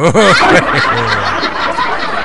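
Laughter: a short 'oh' and a laugh, then a loud, dense wash of laughter.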